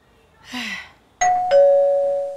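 Two-note ding-dong doorbell chime: a higher note about a second in, then a louder, lower note that rings on, signalling a visitor at the door. A woman's short sigh comes just before it.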